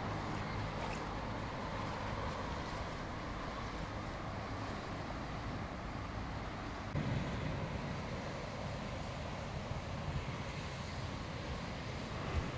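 Steady car engine and road noise from a car being driven, a little louder in the low end from about seven seconds in.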